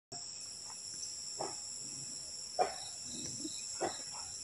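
Steady, high-pitched chorus of forest insects such as crickets or cicadas, with three or four short calls from an animal about a second apart, the loudest a little past the middle.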